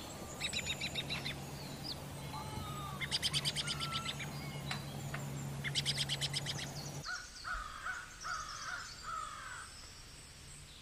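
Birds singing: three bursts of a fast trill, about ten notes a second, over a steady low hum. The hum cuts off about seven seconds in, and lower slurred calls follow.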